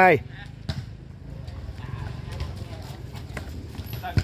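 Volleyball being struck by players' hands during a rally: one sharp slap less than a second in, then a few fainter knocks, over a steady low hum and background murmur.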